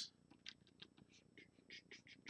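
Near silence, with faint short scratches of a stylus drawing on a Wacom Cintiq pen display.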